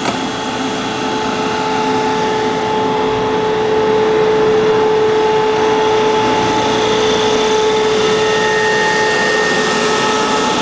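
Push-pull Tze-Chiang express train rolling slowly past along the platform as it pulls in to stop: a steady rumble with a constant high hum, growing louder about four seconds in.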